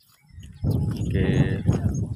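A goat bleating once, a single long, wavering call that starts about half a second in.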